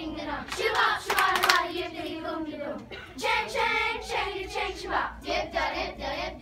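A children's choir singing, with a few sharp hand claps in the first second and a half.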